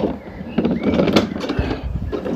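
Garden cart on new pneumatic tyres pumped to 30 psi, rolling over grass with a rough rumble and a couple of sharp knocks from the cart; it is rolling really nicely.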